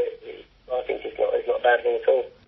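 Only speech: a man talking, with a brief pause early on.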